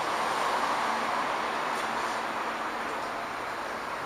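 Steady rushing background noise with no distinct events, strongest in the middle range.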